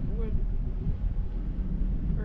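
Wind buffeting the camera's microphone high up on a parasail, a steady low rumble.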